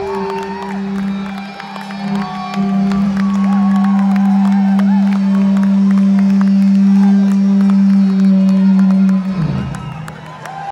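Rock band playing live, loud: a low note is held and droning, then slides down in pitch near the end as it dies away, with crowd cheering over it.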